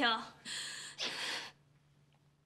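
A woman's words end just after the start, then two heavy, hissing breaths, an upset woman breathing hard. After about a second and a half only a faint steady hum is left.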